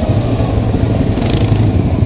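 Yamaha Kodiak 700 ATV's single-cylinder engine running steadily under way on a dirt trail, a low, evenly pulsing rumble.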